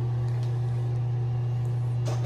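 Steady low mechanical hum filling the small room, unchanging throughout.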